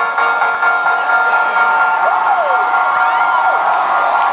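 Electronic dance music played live: the beat drops out, leaving a held synth chord. Over it the concert crowd cheers, with several whoops rising and falling from about two seconds in.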